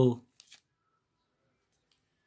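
The tail of a spoken word, then two faint clicks about half a second in as the cardboard box and paper manual are handled, then near silence for the rest.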